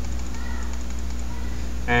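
Steady low electrical hum of the computer recording setup, with faint mouse clicks as the image-size spinner is clicked down.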